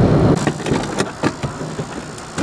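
Low steady noise that drops away about half a second in, followed by a few sharp clicks and knocks.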